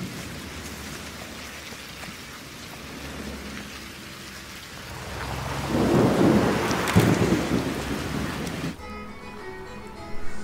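Steady rain falling, with a low roll of thunder swelling about halfway through and dying away. Near the end the rain cuts off suddenly, leaving a quieter bed with faint music.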